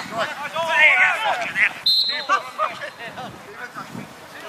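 Players' shouts across a grass football pitch, then, about two seconds in, a single referee's whistle blast: a steady high note lasting about a second that stops play.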